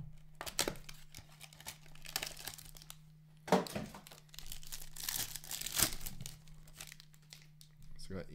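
Foil wrapper of a hockey card pack crinkling and tearing as it is pulled out and opened by hand, in a run of sharp crackles that are loudest about three and a half seconds in and again around five to six seconds in.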